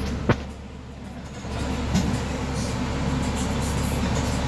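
Steady low rumble of a motor vehicle running, with two sharp knocks right at the start and a brief drop in level around the first second.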